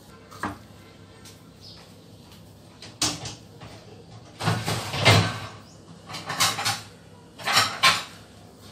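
Kitchen containers and utensils being handled: a light knock about half a second in, another about three seconds in, a longer scraping clatter around five seconds, and two more short clatters near the end.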